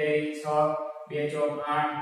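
A man's voice chanting in a sing-song melody, holding each note briefly and stepping between pitches in short phrases.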